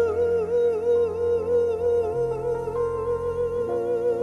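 Soul ballad recording: a singer holds one long high note with a steady vibrato over sustained backing chords.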